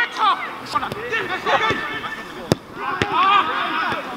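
Footballs being kicked on an artificial pitch: several sharp thuds of boot on ball, the loudest about halfway through, amid players' shouts and calls.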